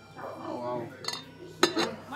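A single sharp clink of a hard item, such as glass or china, being set down about one and a half seconds in, over faint voices.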